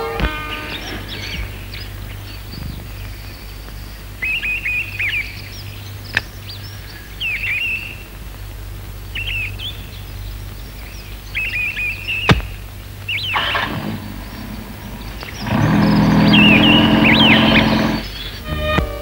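Birds chirping in short repeated phrases over a steady low hum, with two sharp clicks, one near the middle and one about two-thirds through. A louder, dense low sound swells up for the last two and a half seconds.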